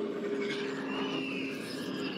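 Quiet ambient drone from an animated episode's soundtrack: steady low tones under a faint hiss, with a soft wavering high tone in the middle.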